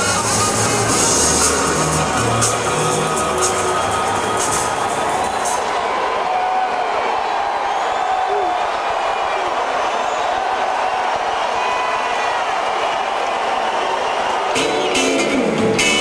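Live rock band in an arena: a song with drums and cymbals ends about five seconds in and gives way to crowd cheering and whistling. Near the end the band starts the next song on electric guitar and drums.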